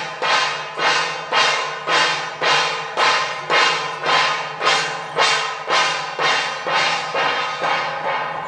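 Pairs of brass hand cymbals clashed together in unison, a steady beat of about two crashes a second, each crash ringing briefly before the next.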